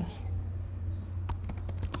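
Computer keyboard keys clicking as code is deleted and retyped: a handful of separate keystrokes, most of them bunched in the second half. A steady low hum runs underneath.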